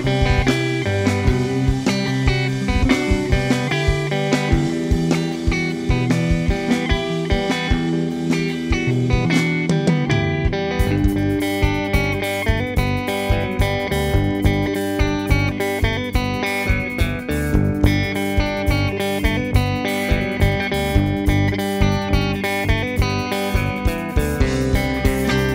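Instrumental rock trio playing live: electric guitar, electric bass and drum kit. The sound grows fuller in the high end about ten seconds in.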